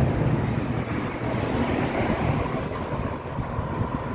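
Road traffic with wind on the microphone: a steady low rumble of engines and tyres, easing slightly near the end.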